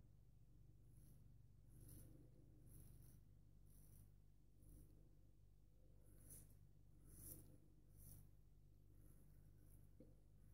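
Faint short scrapes of a Wade and Butcher 15/16" wedge straight razor cutting through lathered stubble, about one stroke a second, over near silence.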